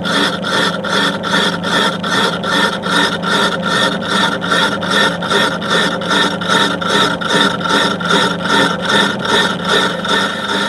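Metal lathe skimming the face of a rusty cast-iron brake disc with a single-point tool: a continuous rasping scrape of the cut. It pulses evenly about three times a second over a steady low hum.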